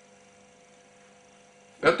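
Faint steady electrical hum made of a few fixed tones. A man's voice starts speaking near the end.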